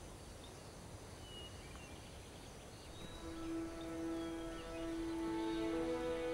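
Faint outdoor ambience with a few faint bird chirps, then soft background music of long held notes fades in about halfway through and builds, more notes joining toward the end.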